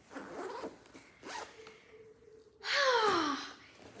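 Backpack zipper pulled open in one long stroke about three quarters of the way in, its pitch falling as the pull slows, after softer rustling of the bag's fabric.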